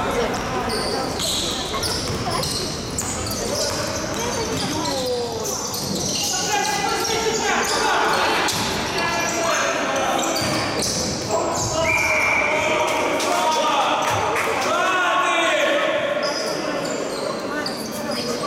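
Basketball game in a sports hall: the ball bouncing on the court floor in repeated thuds as it is dribbled, with players' voices calling out, all echoing in the large gym.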